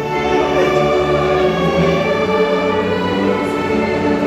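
A large congregation singing a hymn together with a church orchestra of clarinets, cellos and violins, in long held notes at a steady level.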